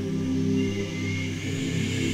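A cappella vocal group singing low, held chords, voices sustaining steady notes that shift to a new chord every second or so.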